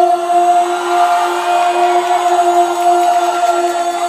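Men singing sholawat, an Islamic devotional song, into microphones in a wavering melismatic line over a steady held drone note.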